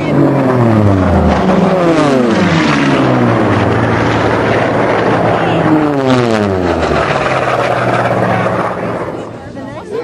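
Unlimited-class piston-engined racing planes passing low and fast at full power. Two pass-bys, one at the start and another about six seconds in, each engine drone dropping in pitch as the plane goes past, before the sound fades near the end.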